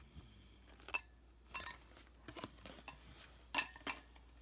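Fingers working a wire-cage-ball cat toy loose from its card packaging: scattered light clicks and clinks of the thin wire and packaging, the loudest pair near the end.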